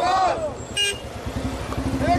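Protesters shouting a slogan chant, with a short vehicle-horn toot about a second in and a low rumble underneath.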